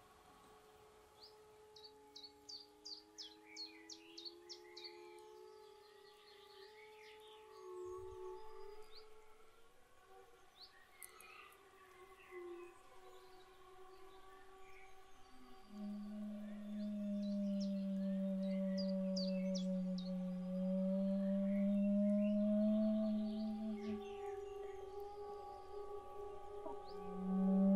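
Experimental improvised music of layered held tones and slow pitch glides, dotted with short high chirping sounds. A louder low held tone comes in a little past the middle and holds for several seconds.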